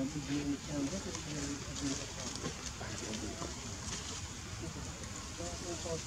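Indistinct voices of people talking in the background, with a quieter stretch in the middle.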